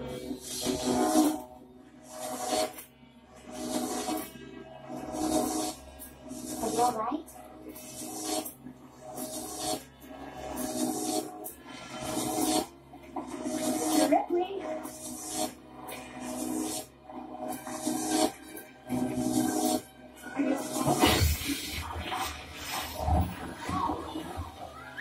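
Film soundtrack of a Jacob's ladder's electric arc buzzing and crackling in repeated surges about once a second, over the film's music.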